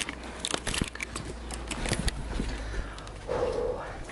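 Handling noise of a handheld camera being moved about, with a low rumble and a quick run of small sharp clicks and rattles over the first two seconds, then a short vocal sound a little past three seconds in.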